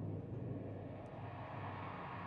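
Symphony orchestra sustaining a steady low rumble, with no distinct strikes, between timpani passages.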